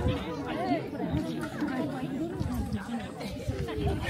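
Several people talking at once, their overlapping voices making a steady chatter.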